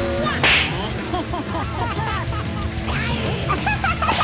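Cartoon sound effects: a whip-like swish about half a second in, then a run of short squeaky, quack-like chirps, over a steady low drone.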